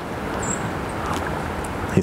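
Steady rushing noise of floodwater and wind, picked up by a microphone held just above the water's surface.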